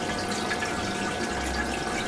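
Steady trickle and splash of aquarium water, as from the tank's filter outflow, with a faint steady tone beneath it.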